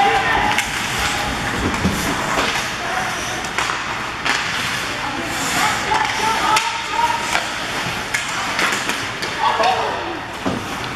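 Ice hockey play in a rink: repeated sharp clacks of sticks and puck against the ice and boards, with spectators' voices calling out.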